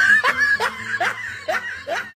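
A person laughing: a run of about five short laughs, roughly two and a half a second, each falling in pitch.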